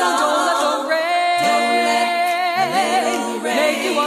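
Female a cappella doo-wop group singing sustained close-harmony chords, with a voice holding a long note with vibrato through the middle and a lower part coming in under it.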